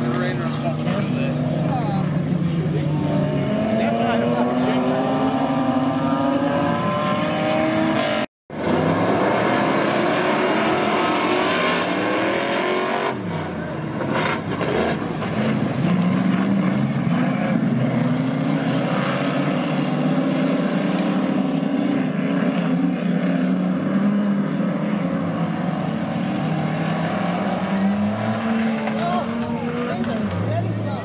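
Several saloon race cars' engines running hard on a dirt circuit, their pitch climbing and falling again and again as they accelerate and change gear. The sound cuts out briefly about eight seconds in.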